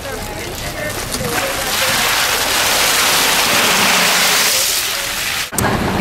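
Ice water pouring and splashing, a steady hiss lasting about three seconds, with a few voices just before it.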